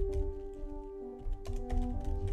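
Computer keyboard keys clicking in quick, uneven taps as text is typed, over soft background music with long held notes.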